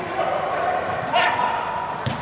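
Footballers' shouts and calls during an indoor small-sided match: short shouts, then one call that rises about a second in and is held.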